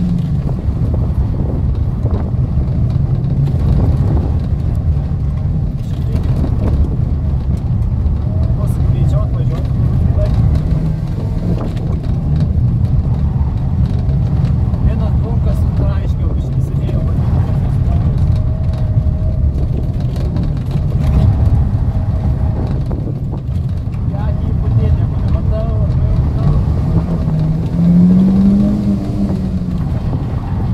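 A small hatchback's engine heard from inside the cabin during a timed slalom run, the revs going up and down as the car is driven through the cones, with a clear rise and fall in revs near the end.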